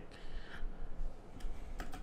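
Computer keyboard keys pressed a few times: short clicks about a second and a half in, over low room noise.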